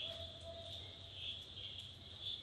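Faint, steady high-pitched chirring of insects, pulsing slightly, with a thin faint tone lasting about a second near the start.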